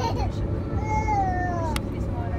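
Cabin noise of an Airbus A330-200 on the ground: a steady low rumble from its Pratt & Whitney PW4000 engines at idle. About a second in, a high cry falls in pitch for about half a second, and a sharp click comes near the end.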